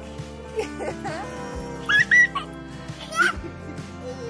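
Toddlers squealing and giggling in three short, high-pitched bursts over steady background music; the loudest squeal comes about two seconds in.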